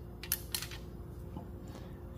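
Light metallic clicks of a magnet pickup tool against a valve keeper and spring retainer as the keeper is worked out of a compressed valve spring: two sharp ticks about a third and half a second in, then a few fainter ones.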